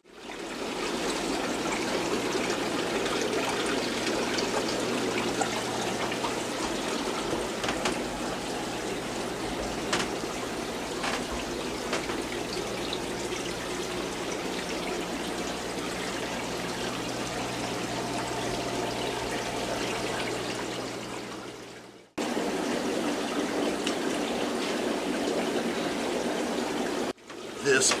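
Running water from aquarium filters trickling and splashing, over a steady low hum of pumps. The sound breaks off abruptly twice near the end.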